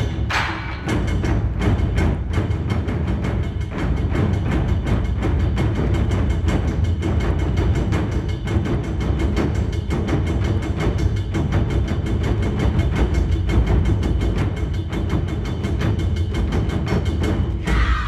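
Large ensemble of taiko drums, barrel-shaped nagado-daiko and big drums on stands, struck with wooden sticks in a fast, driving, steady rhythm. Many deep, booming strokes follow one another closely.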